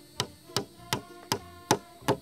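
Steel claw hammer striking a small nail into a wooden block, five even strikes at about two and a half a second.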